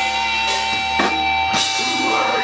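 Live grindcore band playing: a held, distorted electric guitar chord over a drum kit, with drum strikes about twice a second.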